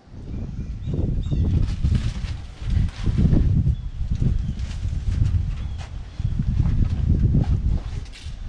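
Wind buffeting the microphone in uneven, rumbling gusts, with brief rustles and light knocks as a riding-mower sunshade's mesh screen is pulled over its frame.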